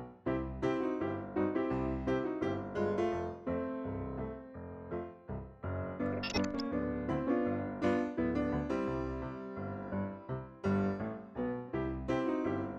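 Background piano music: a steady run of struck notes and chords, each fading after it is played.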